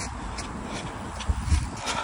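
A runner's footfalls on a paved path, a steady rhythm of soft slaps a few times a second, with a low rumble from the phone jostling or wind near the middle.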